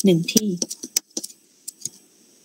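A quick, irregular run of about ten light clicks over a second and a half from a computer mouse as the on-screen page is scrolled, then a couple of fainter ticks near the end.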